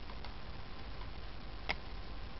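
A few faint clicks and one sharper click near the end, as a pen-shaped tester taps against a copper wire coil and a neodymium magnet, over low room noise.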